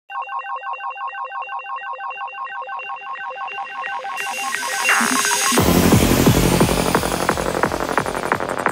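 Opening of a 175 BPM dark psytrance track: a pulsing synthesizer tone pattern, about four pulses a second, is joined by rising noise, and about five and a half seconds in the full beat with kick drum and bass comes in.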